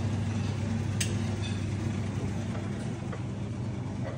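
Steady low machine hum with a light clink about a second in.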